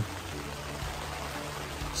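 Hard rain falling steadily on tent fabric overhead, heard from inside the shelter as an even hiss.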